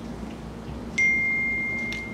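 A single bright ding: one pure chime tone that starts sharply about a second in and rings on, fading slowly.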